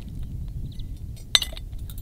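Metal claw mole trap snapping shut as its trigger is pushed: a single sharp metallic clink just over a second in.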